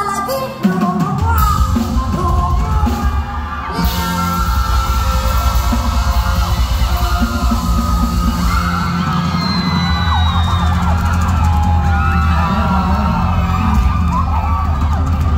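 Live band dance music with a heavy bass beat that comes in about a second in, with an audience yelling and whooping over it.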